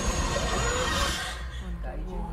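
A voice says "epic" over the trailer soundtrack's deep, low rumble. About one and a half seconds in, the higher sounds drop away and only a low droning rumble with a faint low hum remains.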